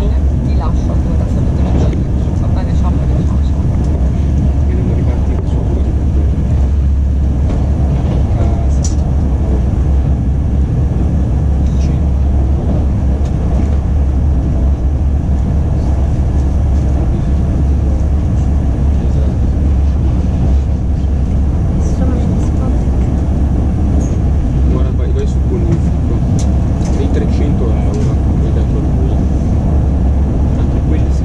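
Cabin noise of an ETR 460 Frecciabianca (ex-Pendolino) electric tilting train running at speed: a steady low rumble of wheels and track, with a few faint clicks.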